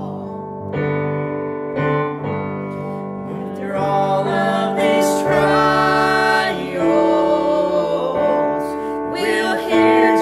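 A man and a woman singing a gospel song together, accompanied by sustained chords on an electric keyboard. The voices come through most strongly from about four seconds in.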